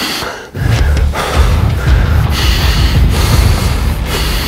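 A man's heavy, straining breaths, one puff about every two seconds, over loud background music with a deep bass.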